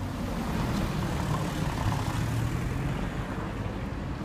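Street traffic: a car passing on a city street, a steady engine-and-tyre rumble that swells through the middle and eases toward the end.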